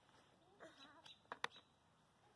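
Near silence, with a faint, short, wavering call and two sharp taps in quick succession a little past a second in.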